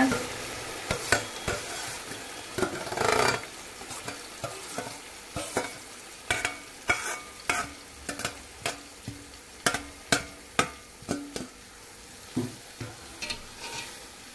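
Sliced onions frying in hot oil in a large aluminium pot, a steady sizzle, with repeated sharp clicks and scrapes of a metal spatula against the bowl and pot as the onions are pushed in and stirred.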